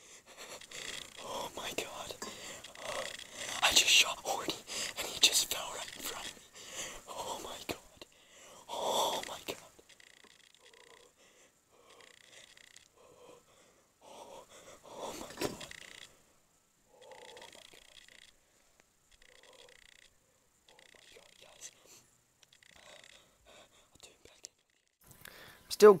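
A man whispering excitedly and breathing hard right at the microphone, the words too low to make out. After about eight seconds it drops to quieter, short breathy whispers with pauses: a hunter's adrenaline just after his shot.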